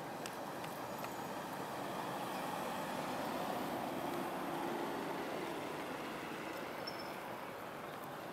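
A vehicle passing at a distance: a steady rumble that swells through the middle and then fades.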